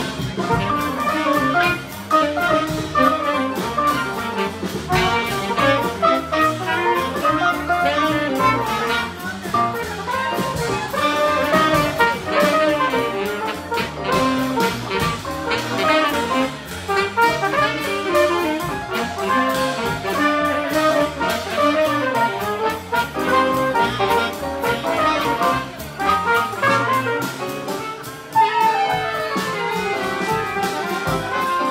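Live small-group jazz: a trumpet plays the lead line over walking upright bass, drums and piano.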